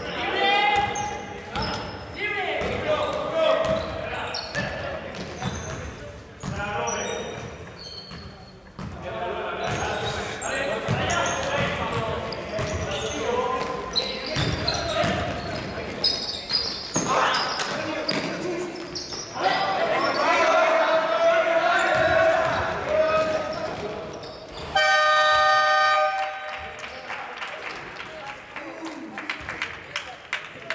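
Basketball game sounds in a large hall: the ball bouncing on the court, short high sneaker squeaks and players shouting. About 25 seconds in, the scoreboard buzzer sounds loudly for about a second and a half, marking the end of the period.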